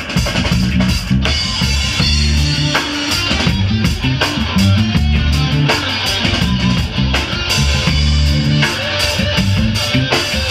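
A live band playing an instrumental groove: a prominent electric bass line over a drum kit, with electric guitar.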